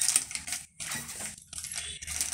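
Small clear plastic cup and straw being handled at close range: irregular crinkling and light clicks.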